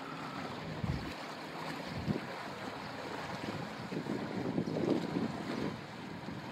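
Water churning and lapping in a propeller's wash behind a wooden sailing ship, with wind buffeting the microphone in gusts, strongest a little before the end.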